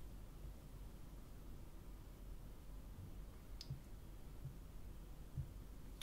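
Quiet room tone with one short, sharp click a little past halfway and a few faint soft taps later: fingertips tapping and swiping on smartphone touchscreens on a wooden table.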